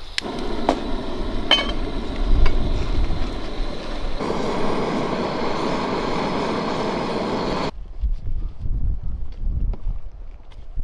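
Small screw-on gas cartridge camping stove burning with a steady hiss, with a few sharp clicks in the first second or so as it is handled and lit. It stops abruptly about three-quarters of the way through, leaving gusty wind rumble on the microphone.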